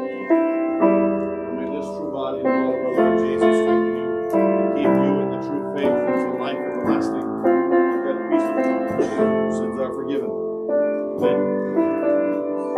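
Piano playing a steady run of chords and melody notes.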